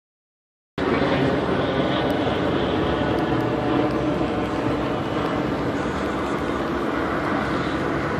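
Cars passing on the road one after another, a steady mix of engine and road noise that begins just under a second in.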